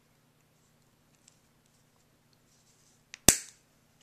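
A small steel coil spring being snipped through with the cutting jaws of pliers. There is a faint click, then one sharp, loud snap about three seconds in as the wire parts, dying away quickly.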